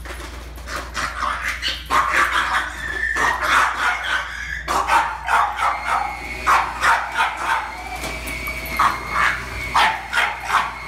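French Bulldog barking repeatedly at an upright vacuum cleaner, short sharp barks about twice a second starting about a second in. This is object-directed reactivity: the dog wants to attack the sweeper.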